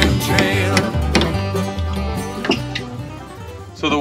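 Country-style background music with plucked strings and a steady bass line, fading down near the end.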